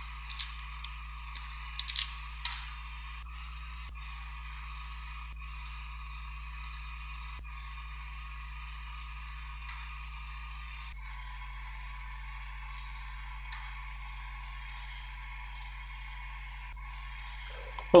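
A few scattered computer mouse clicks over a steady electrical hum and hiss.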